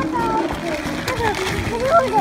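Plastic candy packaging crinkling and rustling as it is handled and opened, under overlapping voices.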